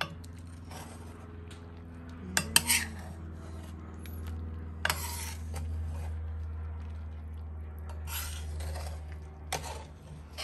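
Metal ladle stirring beans and spinach in a stainless steel pot, scraping and knocking against the pot's side and rim in a few sharp clinks, the loudest a couple of seconds in. A steady low hum runs underneath.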